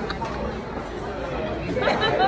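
Restaurant chatter: many voices talking at once in a busy dining room, with one nearer voice standing out near the end.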